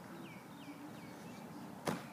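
Small birds chirping in short falling calls, then a single sharp knock near the end.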